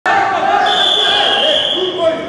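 Referee's whistle blown to start a wrestling bout: one steady high tone starting just over half a second in and held for more than a second, over the voices of a crowd in a large hall.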